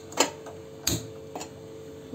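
Three short, sharp clicks and taps from a red non-stick kadhai being handled on a gas stove, over a faint steady hum.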